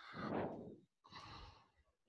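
A woman's breath picked up by her microphone over a video call: a sigh-like exhale lasting about a second, then a shorter, fainter breath.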